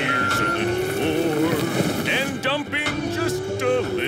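A toy dump truck's engine sound effect running under background music, with short squeaky voice sounds in the second half.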